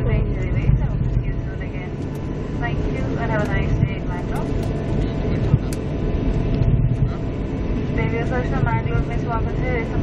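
Airliner cabin noise while taxiing after landing: a steady low rumble from the engines and the rolling gear. People talk over it at intervals.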